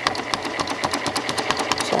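Janome 6600 sewing machine stitching with no thread in the needle or bobbin, its needle and free-motion foot clattering at a rapid even rate of roughly ten stitches a second.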